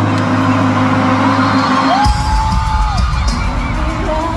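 Live arena concert music recorded from among the crowd: a sustained low chord for the first half, then deep bass comes in about halfway as a singer holds one long note, with crowd whooping.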